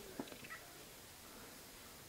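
A domestic cat making a brief, faint meow near the start, with a few soft knocks from handling; the rest is faint hiss.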